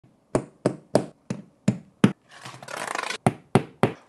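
Hammer striking at a wall: six quick blows, then about a second of rough scraping, then three more blows.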